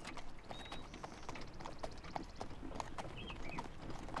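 Horses' hooves clip-clopping at a steady walking pace as they pull a carriage along a road, about three to four hoof strikes a second.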